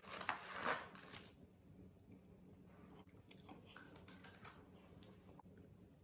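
Plastic cookie packaging crinkling for about the first second, then faint crunches and clicks of sandwich cookies being bitten, chewed and pulled apart.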